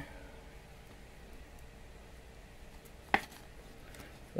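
Faint handling of a chrome trading card as it is slid into a clear plastic penny sleeve, with one sharp click about three seconds in.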